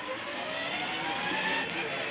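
Electric drive motors of a battery-powered ride-on toy jeep whining as it drives, the whine rising slowly in pitch and growing louder as the jeep picks up speed.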